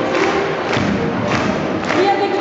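Brass band playing a march while marching in, with heavy thumping beats about every 0.6 seconds, four in all, under the horns.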